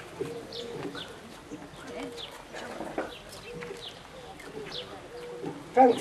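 A dove cooing over and over in short low notes, with a small bird chirping brief high falling notes in between.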